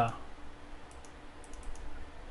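Faint computer mouse clicks, several in quick clusters, as points of a polygon are placed on screen, over low room hiss.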